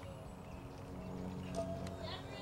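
Softball bat striking a pitched ball, a single sharp crack near the end, over a steady low outdoor hum.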